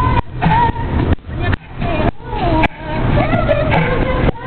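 Young girls' voices chanting a song loudly and close to the microphone, over a heavy steady low rumble. The sound cuts out briefly several times.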